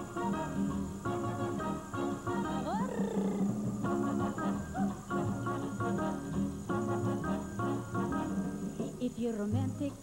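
Big-band orchestra playing an upbeat, rhythmic Latin-style introduction in repeated chord blocks, with one quick rising-then-falling sliding sound about three seconds in. The singer's voice comes in near the end. A faint steady high-pitched whine runs underneath, caused by the videotape running too tight in its housing.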